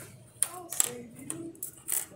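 Small plastic test tubes from an amatoxin test kit clicking and rattling as they are handled and set down on a table, a few short sharp clicks.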